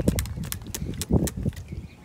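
Plastic trigger spray bottle squirted in a quick run of short spritzes, several a second, wetting the braided line on a conventional reel so it won't burn the thumb when casting; the spraying stops about a second and a half in.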